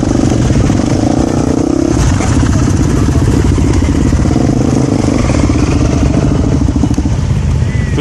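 Voge 300 Rally's single-cylinder engine running steadily at low speed, with an even pulsing beat, as the motorcycle idles and rolls slowly forward.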